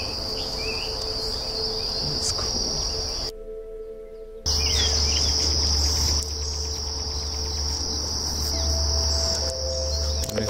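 A steady, high-pitched drone from a chorus of insects, with a few short bird chirps in the first seconds. The sound drops out briefly a little over three seconds in, and a low rumble follows for about two seconds before the insect drone carries on alone.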